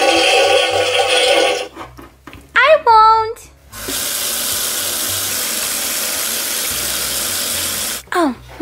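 A tap running water into a bathroom sink, a steady even rush that starts about halfway through and cuts off at the end. Before it come a short pitched sound and a brief rising voice.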